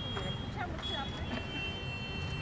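Steady low rumble of street traffic under indistinct voices, with a thin, steady high-pitched tone running through it.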